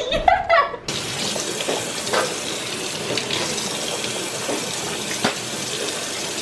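Laughter for about the first second, then a sudden cut to a kitchen tap running steadily into a stainless steel sink, with a few brief splashes as water is cupped to the mouth.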